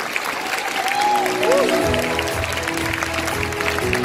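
Audience applauding as music comes in, its melody starting about a second in and a steady bass line joining about halfway through.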